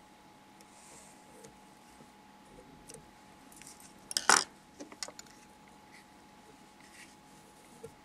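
Quiet room tone with a faint steady hum, broken about four seconds in by a sharp clink and a few lighter clicks from small tools being handled at the fly-tying vise.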